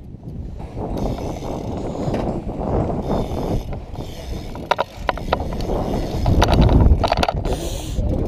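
BMX bike riding on a concrete skatepark surface: a steady low rumble of the tyres rolling, with a few sharp clicks and knocks from the bike about halfway through and again near the end, where it is loudest.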